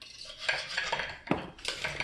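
Knife and fork scraping and clinking against a plate while cutting a cooked steak, with one sharper click a little past halfway.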